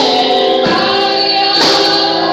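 Women singing a gospel praise-and-worship song into microphones, with strikes of a tambourine about a second apart.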